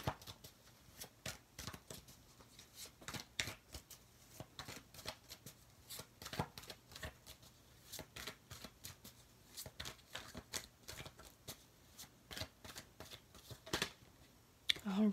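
A deck of tarot cards being shuffled by hand, a quiet, irregular run of card clicks and flicks.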